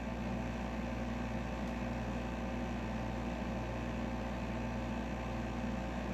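Steady background hum with a faint hiss and a few thin, unchanging tones; nothing starts or stops.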